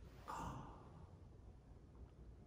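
A man's short, audible breath about a quarter second in, picked up close by the lectern microphone; otherwise faint room tone.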